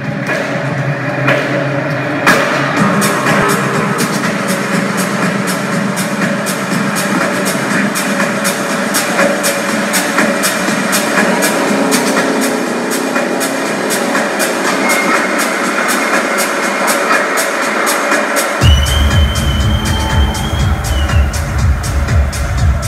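Techno played in a DJ mix, with a steady beat of high percussion over mid-range synths and the low end held out. About nineteen seconds in, the bass comes in hard, with a held high synth tone for a couple of seconds.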